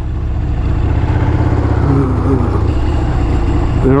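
Panhead V-twin motorcycle engine running at low speed as the bike rolls slowly, its exhaust giving a steady, evenly pulsing beat.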